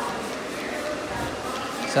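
Hand-held spray bottle misting water onto a client's hair, a soft hiss with faint background voices under it.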